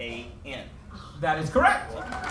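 Speech only: a man's voice speaking in short phrases with pauses, rising in pitch near the end.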